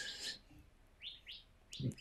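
Two faint, short high chirps about a second in, from a small bird.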